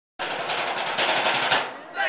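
Metal trash cans drummed with sticks in a fast roll, closing on a final hit about one and a half seconds in.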